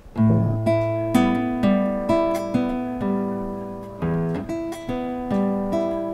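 Classical guitar played fingerstyle, slowly: a low bass note rings while single treble notes are plucked above it, about two a second, in a simple repeating beginner pattern.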